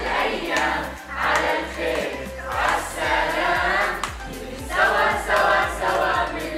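A group of children singing together over backing music with a steady beat of about two thumps a second.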